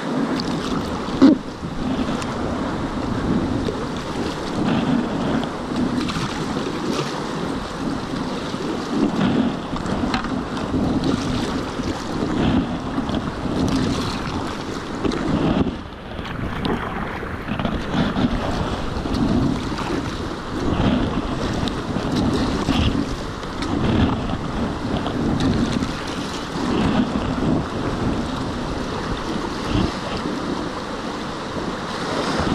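River water rushing and splashing around a kayak as it is paddled through whitewater, the paddle strokes swelling in rhythm about once a second, with wind noise on the camera microphone. A single sharp knock about a second in, and the sound briefly goes dull about halfway through.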